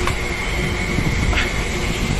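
Steady machinery noise with a thin, steady high whine.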